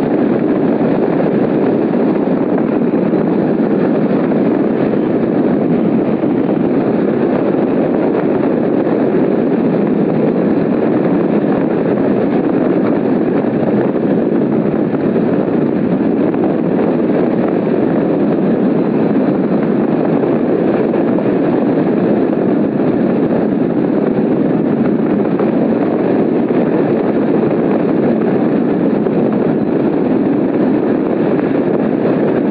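Steady, loud rush of airflow over the microphone of a camera mounted on a hang glider in flight.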